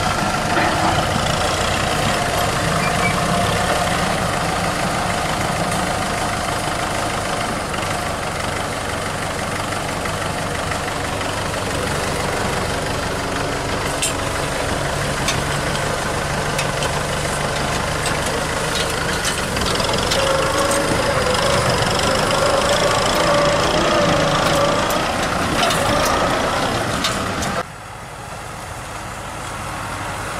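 Diesel engines of Kubota M6040 tractors running steadily while the tractors work disc ploughs through the field, with a few clicks. The sound drops suddenly in level near the end.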